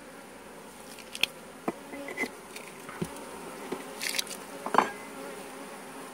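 Honeybees buzzing steadily in and around an open hive, with a handful of sharp clicks and knocks as the wooden frames are handled.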